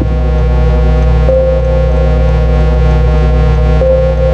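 Dark electronic music played live on a Roland MC-101 groovebox and TR-6S rhythm machine: a steady low synth drone, with a higher held synth note coming in about a second in and again near the end.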